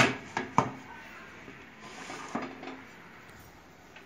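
Aluminium pressure cooker lid clanking as it is closed and locked by its handle: a few sharp metal clicks in the first second, then fainter knocks about two seconds in.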